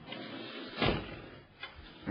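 Handling noise at an open desktop computer case: a soft rustle, then a single sharp knock a little under a second in and a lighter click near the end.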